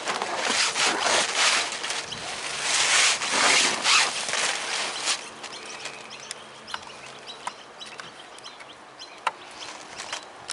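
Harsh, rasping bird calls, loudest in the first half, then a quieter outdoor background with a few faint clicks.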